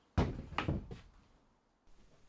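A sharp knock followed by a few lighter knocks over the next second: clamped pine frames with metal bar clamps being set down and leaned against a stack of timber.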